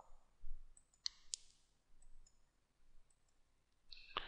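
Computer mouse button clicking: two sharp clicks close together about a second in, then a few faint ticks.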